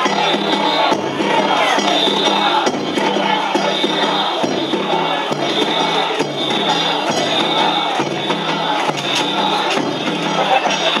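Danjiri float's hayashi festival music, drums and hand gongs beaten in a loud, fast pattern that repeats about once a second, mixed with a crowd of pullers and onlookers shouting.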